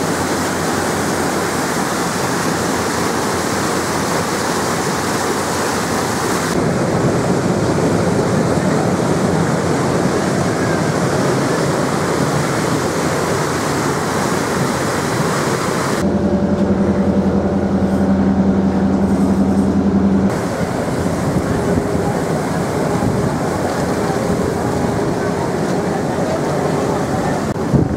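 Passenger boat under way: a steady rushing of churned water from its wake over the constant drone of its engine. For a few seconds past the middle, a low engine hum with a clear steady pitch is loudest, and the sound changes abruptly a few times.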